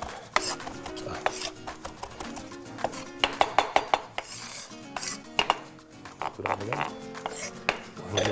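Large kitchen knife chopping cucumber, fresh coriander and hot chili pepper on a wooden cutting board: a run of irregular knife strikes on the board.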